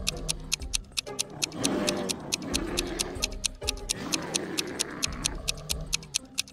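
Stopwatch ticking sound effect, an even, fast tick of about four or five ticks a second, over background music.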